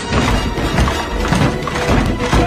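Film soundtrack: dramatic music mixed with crashing and thudding sound effects.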